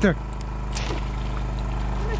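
A small engine hums steadily on the boat. About three-quarters of a second in comes one brief sharp sound as a bowfishing arrow is shot and strikes the water at a fish.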